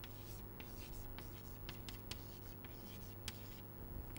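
Chalk writing on a chalkboard: faint, irregular scratching and tapping strokes as an equation is written, with a sharper tap a little after three seconds.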